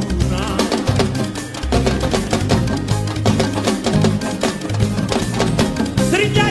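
Senegalese mbalax band playing live in an instrumental passage without vocals: fast, dense percussion over a driving bass line, with short plucked notes.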